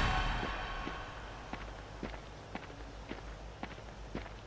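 Faint footsteps of one person walking at about two steps a second, after the tail of a loud rushing transition sound fades out at the start.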